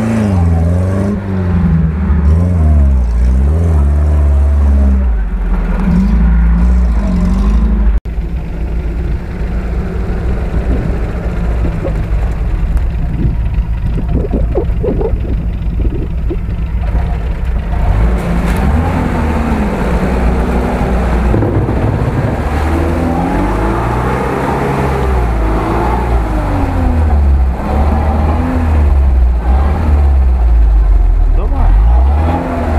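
UAZ-469 off-road vehicles' engines revving up and down, labouring in low gear as they push through deep mud ruts. There is an abrupt cut to another vehicle about eight seconds in.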